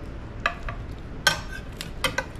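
Metal serving fork clinking and scraping against a ceramic baking dish while cutting into and lifting a baked egg casserole: about four light clicks, the sharpest about a second and a quarter in.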